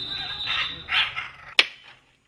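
Scarlet macaws giving two short harsh squawks about half a second apart, over a thin steady high tone, with a sharp click near the end.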